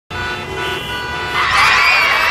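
Car horns honking together in a traffic jam, several steady tones overlapping. About a second and a half in, a louder clamour of many children's voices comes over them.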